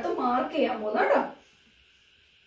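A woman's voice speaking, stopping about a second and a half in, then near silence with faint room hiss.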